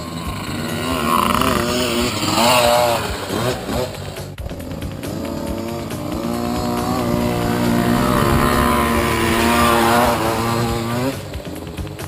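Dirt bike engines revving as they ride, the pitch rising and falling with the throttle. The note climbs steadily through the second half, then drops off near the end.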